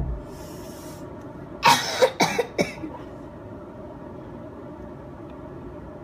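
A person coughing: a quick run of about four coughs about two seconds in, over a steady low background noise.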